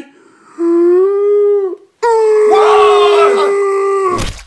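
A man's voice making a strained, drawn-out 'uhhh' moan as a puppet character, held as two long steady notes: a shorter one starting about half a second in, then a louder, slightly higher one lasting about two seconds.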